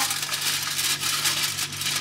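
Sheet of aluminium kitchen foil being crinkled and folded by hand into a closed parcel: a continuous crackling rustle.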